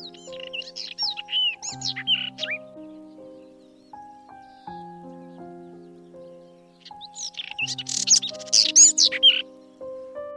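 Robin song in two bursts of high, fast-gliding warbled phrases: one in the first two and a half seconds, the other from about seven to nine and a half seconds in. Soft background music of slow sustained notes plays under the birds.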